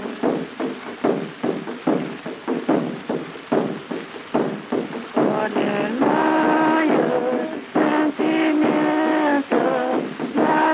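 Caja (Andean frame drum) beaten in a slow, steady pulse of about two strokes a second. About halfway through, two women's voices come in singing a slow vidalita riojana in two parts over the drum. The sound is the muffled, narrow-band sound of a 1936 instantaneous celluloid disc recording.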